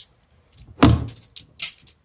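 Steel tape measure blade being handled and laid against a battery case: a clatter a little under a second in, followed by a few light clicks.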